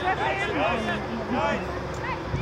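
Several voices shouting and calling at once across a junior rugby field, overlapping and distant, over a steady outdoor background noise.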